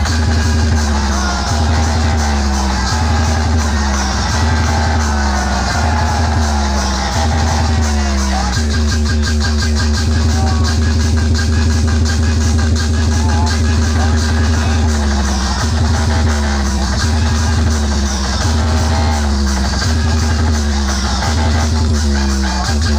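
Loud electronic dance music blasting from a stacked DJ box sound system, dominated by heavy bass. Deep bass notes drop in pitch about every three-quarters of a second. About a third of the way in, they give way to a few seconds of fast, even stuttering pulses, and after that the dropping bass returns.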